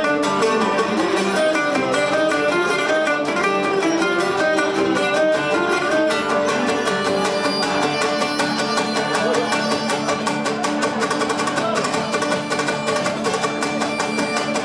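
Live Cretan folk music: a Cretan lyra bowed over plucked lutes strumming an even rhythmic accompaniment, a lively instrumental tune with no singing.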